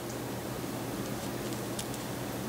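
Quiet room tone: a steady low hiss with a faint hum underneath.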